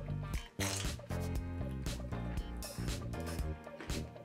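Background music, with a person chewing a bite of thin, crispy pizza close to the microphone.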